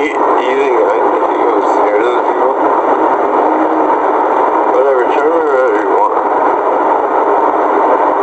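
Loud, steady hiss of a police car's back-seat recording, with muffled, unintelligible voices just after the start and again around five to six seconds in.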